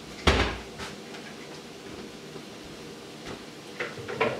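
A single sharp knock with a low thud about a third of a second in, as of something set down hard at the stove, followed by quiet kitchen noise with a few light clicks.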